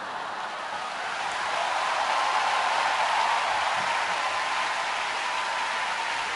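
A large audience applauding, swelling over the first couple of seconds and then holding steady, with a faint steady tone under it.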